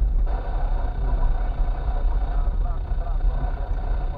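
Car driving slowly over a potholed dirt road, heard from inside the cabin: a steady low rumble of engine and tyres.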